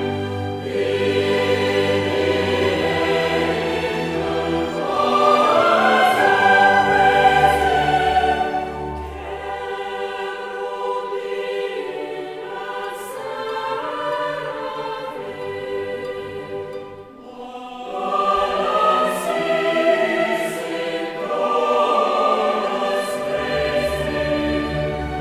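Choral music: a choir singing slow, long-held notes, with a brief quieter dip about two-thirds of the way through.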